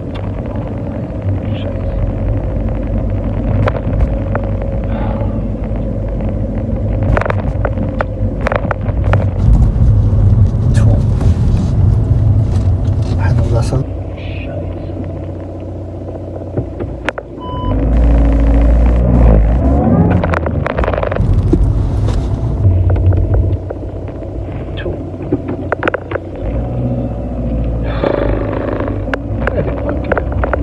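Road and engine rumble inside a moving car's cabin, a dense low drone that swells louder for a few seconds around the middle.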